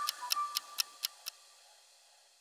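Ticking clock sound effect of a quiz countdown timer, about four ticks a second, growing fainter and stopping after just over a second as the time runs out.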